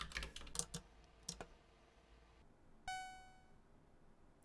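A few computer keyboard keystrokes, then about three seconds in a single electronic beep from the Commodore 128 that fades out in under a second. The beep is the error signal as the compile stops on a misspelled procedure name.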